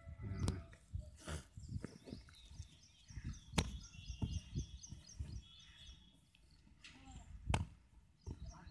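Outdoor ambience: a fluctuating low rumble of wind on the microphone, three sharp clicks, and a run of evenly repeated high chirps in the middle.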